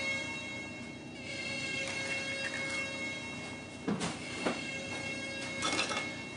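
A faint, steady drone of several held tones, with a few light clicks about four seconds in and again near the end.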